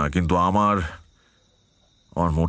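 A voice speaks for about the first second and stops, leaving a faint, steady high-pitched chirring of crickets in the background.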